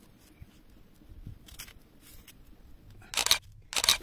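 Kitchen knife slicing through a red onion onto a stone slab: faint, scattered cutting ticks and crunches. Near the end come two short, louder rustling noise bursts.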